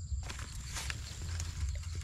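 Low rumble of wind or handling on the microphone, with a few faint rustles and clicks as the wire-mesh box trap holding the snake is moved about.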